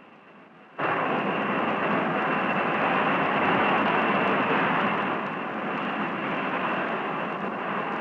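Jet aircraft in flight: a steady rushing engine noise with a thin high whine on top. It starts abruptly about a second in and eases slightly after the middle.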